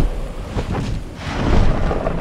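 Storm sound effects, a low rumble of wind and thunder, swelling twice.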